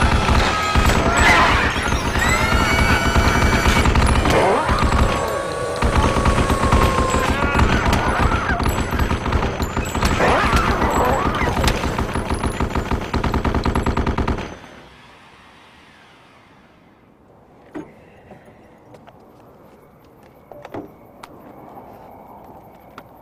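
Twin-barrelled anti-aircraft cannon firing long rapid bursts, with high shrill creature shrieks rising and falling over the gunfire. The firing stops abruptly about fourteen seconds in, leaving a low background with a couple of faint thumps.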